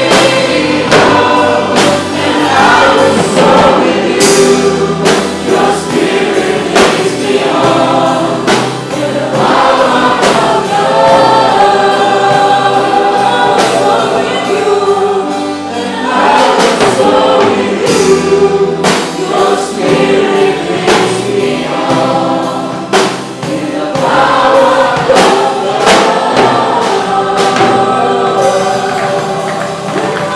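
Live worship music: a congregation singing along with a worship band, the drum kit and cymbals striking throughout.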